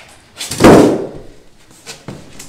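A large styrofoam packing insert set down onto a wooden subfloor: one loud thud about half a second in, followed by a faint click near the end.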